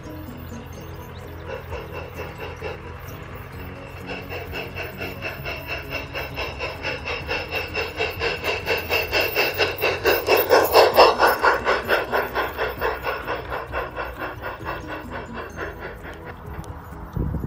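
A miniature railway train passing on an elevated track: a rhythmic beat of about three a second builds as it approaches, is loudest about eleven seconds in, then fades as it goes away. Background music plays underneath.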